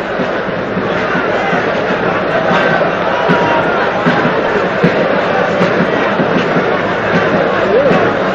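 Stadium football crowd: many fans' voices shouting and chanting together, swelling about a second in and then holding steady.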